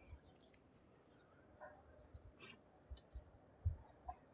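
Very quiet: a few faint clicks and soft low knocks, most of them in the second half.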